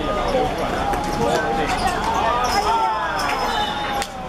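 Several voices of players and spectators shouting and calling out over one another during a five-a-side football attack, with a few sharp thuds of the ball being struck on the hard court.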